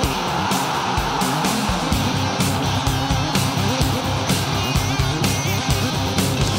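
Rock music with electric guitar and a steady drum beat, about two beats a second.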